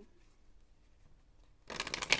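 Quiet room tone for most of the time. Then, near the end, a deck of tarot cards is shuffled by hand, a quick, dense run of card flicks.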